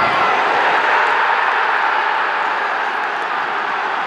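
Football stadium crowd cheering a goal: loud, massed cheering that swells as the ball goes into the net and holds steady.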